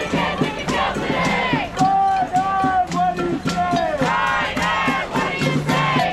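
A crowd of marchers chanting a protest slogan together in a repeating rhythm, many voices rising and falling in unison, with sharp beats kept in time underneath.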